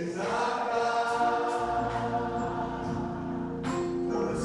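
Gospel worship music: singing held over keyboard chords. A low bass comes in about a second and a half in, and there is a single sharp percussive hit near the end.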